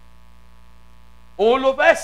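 Steady electrical mains hum from a church PA system, then a loud voice over the loudspeakers about one and a half seconds in, with long, rising and falling vowels.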